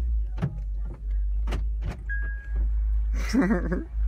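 Inside a car: a heavy low rumble with a string of sharp knocks and clicks, and a short steady beep about two seconds in.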